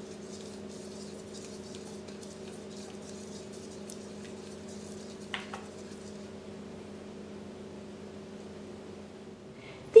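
Silicone-coated whisk beating an oil-and-vinegar marinade in a bowl: a faint, quick wet patter that dies away about two-thirds of the way through, over a steady low hum.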